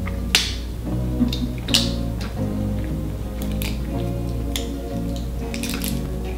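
Background music playing under a scatter of short sharp clicks and crackles of clear plastic packaging being pulled off a small slime tub.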